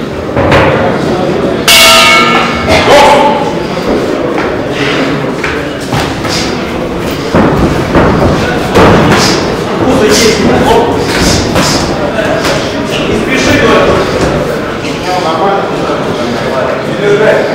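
Boxing ring bell rings once about two seconds in, starting the round, followed by the thuds of gloved punches landing, mixed with shouting voices.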